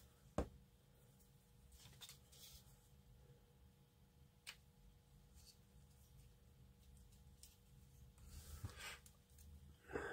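Near silence with faint handling sounds of plastic model kit parts: one sharp click about half a second in, a few small ticks, and a soft rustle near the end, over a faint steady hum.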